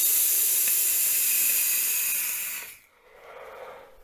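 Long draw on a Mutation MT-RTA rebuildable tank atomizer fired on a box mod: a steady hiss of air and vapor through the firing coils for nearly three seconds that stops abruptly, followed by a softer, breathy exhale of the vapor.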